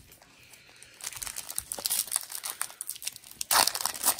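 Foil booster pack wrapper crinkling as it is handled and torn open, starting about a second in, with the loudest crackle near the end.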